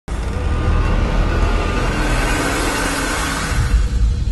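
Ominous horror-film soundtrack: a low rumbling drone under a loud hissing wash that fades away near the end, then a deep low hit.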